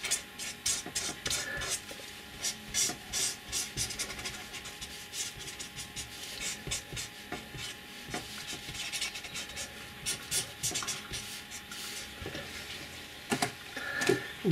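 Yellow felt-tip marker scratching and rubbing across paper in short, irregular strokes as colour is shaded into a drawing.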